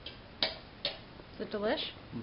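Two sharp clicks of a fork against a china dinner plate, about half a second apart, then near the end a short wordless vocal sound whose pitch wavers.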